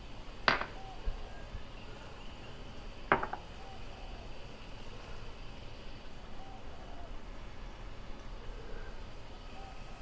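Two sharp clinks of ceramic cups being set down on the countertop, one about half a second in and one about three seconds in, each ringing briefly. Between and after them there is only a faint steady background hum.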